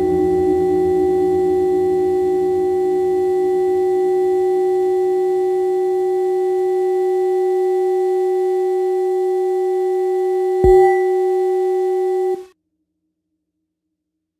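The closing of a techno track: a sustained synthesizer tone held on one pitch, with a faint low pulse underneath that fades away. A brief low thud comes about ten and a half seconds in, and then the sound cuts off abruptly near the end.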